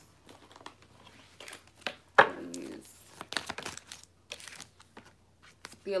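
Oracle cards being handled and drawn from the deck: a series of short rustles, flicks and snaps of card stock, the sharpest about two seconds in.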